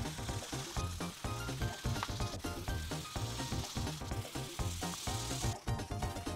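An Imagine Ink marker's felt tip scrubbing back and forth across a coloring-book page. It makes a steady dry hiss that breaks off briefly near the end, over background music with a steady beat.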